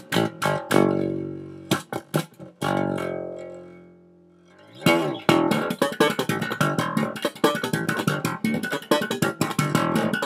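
Electric bass guitar played slap style, with sharp slapped and popped notes. Two held notes ring and die away, fading almost to nothing about four seconds in, then a fast, busy run of slap-and-pop notes fills the rest.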